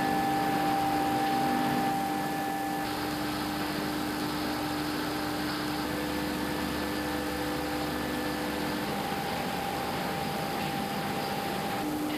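Steady machine hum with a haze of noise and a few steady pitched tones, which shift about three seconds in and again near nine seconds.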